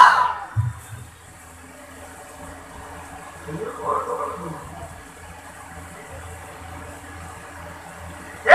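Pause in a man's amplified chanting: his voice through the PA cuts off at the start, leaving a low steady hum from the sound system and hall. A brief faint murmur of voices comes about four seconds in.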